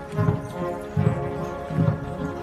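Military band playing a slow march: sustained held chords over a deep drum beat a little under once a second.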